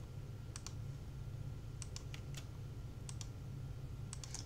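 Faint clicks of a computer mouse button, coming in quick pairs about four times, over a low steady hum.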